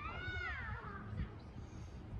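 A single high, meow-like call that rises and then falls in pitch over about a second at the start, over a faint low rumble.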